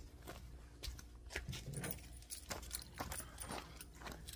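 Faint scattered clicks and light rattles of a plastic winch handlebar switch and its loose wiring and connectors being picked up and handled.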